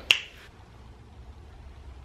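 One sharp finger snap.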